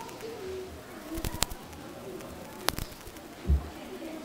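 Room noise in a hall between performances: scattered sharp clicks and knocks, faint low murmur, and a low thump about three and a half seconds in.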